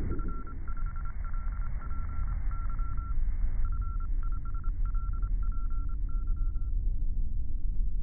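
Intro sound design: a single-pitched electronic tone beeping on and off in a pattern of short and long beeps, over a deep steady rumble. The beeping stops about two-thirds of the way through, leaving the rumble.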